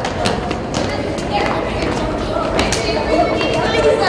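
A group of young girls running and hopping on a rubber floor mat, with scattered footfalls and children's chattering voices that grow busier near the end.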